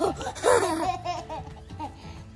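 A girl laughing on a swing. The loudest burst of laughter comes about half a second in, followed by shorter bouts of laughter.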